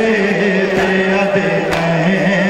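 A male voice chanting a Punjabi noha (Muharram mourning lament) in long held notes, with sharp slaps about once a second from the mourners' chest-beating (matam) in time with it.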